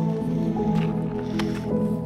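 Instrumental background music with slow, held notes, and a few short clicks over it.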